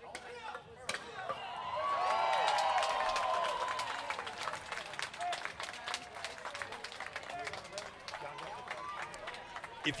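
Crowd clapping steadily, with a swell of many voices shouting together between about two and four seconds in.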